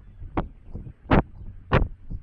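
Footsteps of the walker carrying the camera, picked up as three heavy thuds a little over half a second apart.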